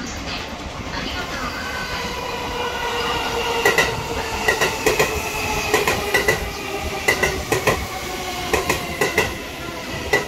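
Tokyo Metro 16000 series electric commuter train arriving at a station platform over a steady whine. From about three and a half seconds in, its wheels clack over the rail joints in quick pairs as the cars pass close by.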